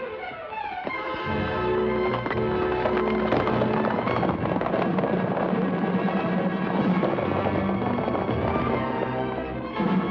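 Orchestral score music under the galloping hoofbeats of several horses. The music swells over the first two seconds and then carries on loud and steady over the dense hoofbeats.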